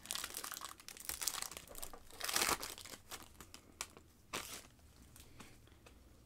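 Plastic-foil wrapper of a 2021 Optic football hobby pack crinkling and being torn open in the hands, in irregular bursts, loudest a little over two seconds in.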